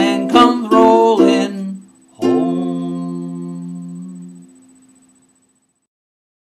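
Tenor ukulele strummed under the last sung words of the song, then a gap and a single closing strum a little over two seconds in, left to ring and fade away to silence.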